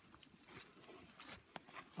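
Near silence with faint rustling of movement on dry leaf litter, and a single sharp click about one and a half seconds in.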